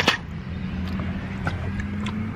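Steady low hum of a car heard from inside its cabin, with a sharp click right at the start and a couple of faint ticks.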